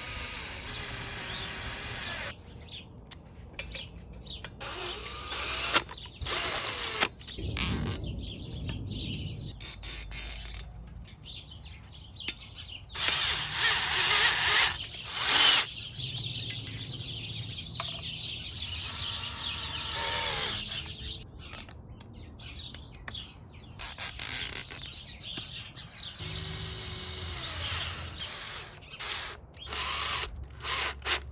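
Cordless drill/driver with a hex bit running in short bursts of varying length, driving screws, with clicks and rattles of metal parts being fitted between bursts; the loudest bursts come about halfway through.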